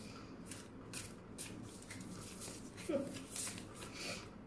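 A deck of tarot cards being shuffled and handled, a run of soft, quick swishes. A brief voice sound comes just before three seconds in.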